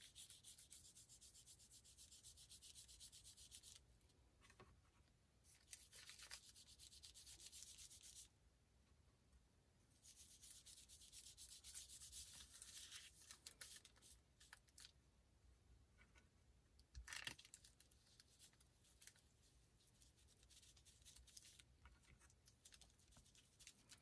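Fingertips rubbing gold metallic wax over an embossed paper panel, bringing out the embossing. It is a faint, dry rubbing in three stretches of a few seconds each with short pauses between, and one soft knock about two-thirds of the way through.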